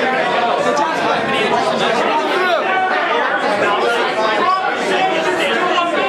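Crowd babble: many people talking at once in a crowded room, a steady din of overlapping voices with no single speaker standing out.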